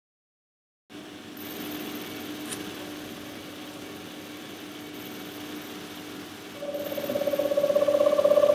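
Silent at first. About a second in, a faint hiss with a low steady hum begins. Near the end a louder, rapidly pulsing hum sets in and grows in level.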